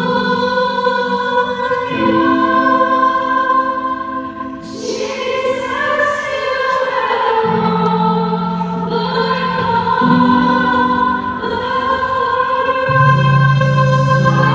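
Live worship music: held chords with a changing bass line and singing voices, and a cymbal ringing out about five seconds in.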